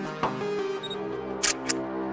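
Background music with a camera shutter sound effect: two quick clicks about one and a half seconds in.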